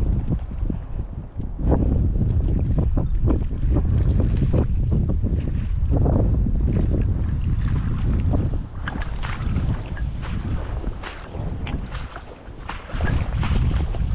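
Wind buffeting the microphone as a loud, steady low rumble, with scattered short crackles over it, more of them in the second half.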